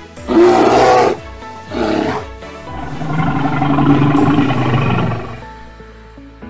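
Bear growling three times, two short growls followed by a longer, drawn-out one, over background music.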